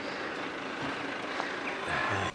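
Steady outdoor background noise, an even distant rush with no words, with a couple of faint short high chirps about a second and a half in.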